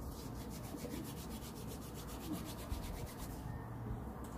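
Faint, fast rubbing and scratching of dreadlocked hair as fingers push a bobby pin through a loc at the root, about four or five strokes a second, stopping shortly before the end.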